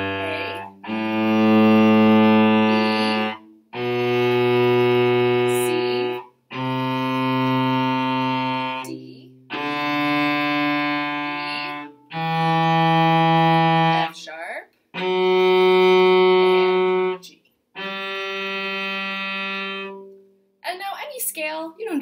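Cello bowing a one-octave G major scale upward, one long note at a time: the open-G note carried in from before, then A, B, C, open D, E, F sharp and the top G, each held about two and a half seconds with short breaks between. A woman's voice starts near the end.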